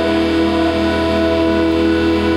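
Roland digital accordion holding one steady, sustained chord with a low bass note beneath it, in a live song.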